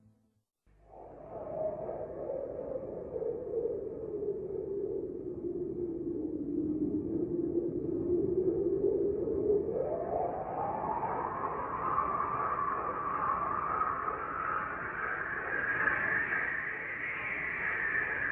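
An eerie synthesized drone, a hissing rush with one pitch that slowly sinks and then climbs over several seconds, starting just under a second in.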